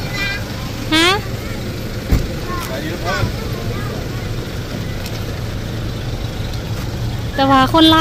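A steady low hum, with voices briefly calling in the background and a single thump about two seconds in.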